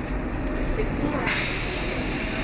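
Double-decker bus engine running with a steady low rumble beneath the upper deck, and a sudden hiss of the air brakes starting a little past a second in.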